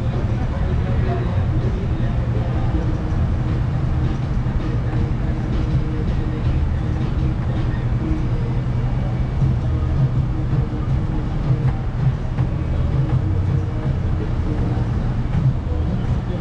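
City traffic in a slow queue, dominated by the low, steady rumble of a bus's engine running right alongside.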